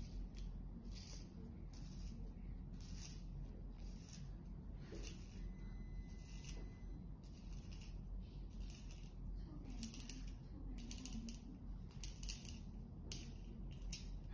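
A wooden pencil being turned in a small handheld sharpener, its steel blade shaving the wood in a steady run of short scraping strokes, a little more than one a second.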